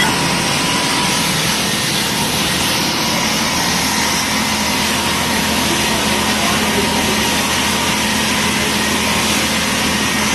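Steady, loud rushing noise of natural gas jetting under pressure from a ruptured PNG pipeline and burning, with a faint steady hum underneath.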